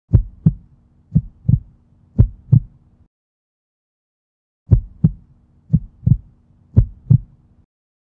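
Heartbeat sound effect: three low double thumps about a second apart, a pause of about a second and a half, then three more.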